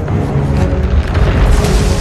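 Orchestral film score over deep booming sound effects, with a rushing swell that builds toward the end.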